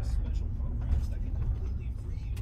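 Steady low rumble of a large Ford vehicle's engine and tyres, heard from inside the cabin while it is driven.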